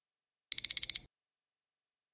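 Alarm-clock style beeping sound effect marking the end of a quiz countdown timer: four quick, high beeps within half a second, about half a second in.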